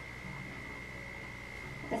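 Quiet room tone with a steady, faint, high-pitched whine running throughout, and a word of speech starting at the very end.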